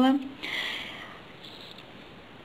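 A soft breath drawn in through the nose just after a spoken phrase ends, starting about half a second in and fading over about a second. After it, only quiet room tone.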